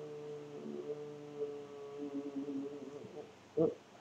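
A man's drawn-out hum held on one steady pitch, wavering a little and fading out about three seconds in, with a short vocal sound near the end.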